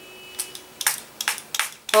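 Small pump spray bottle misting alcohol with dissolved nail polish: four short hissing squirts, the first just under half a second in, coming closer together.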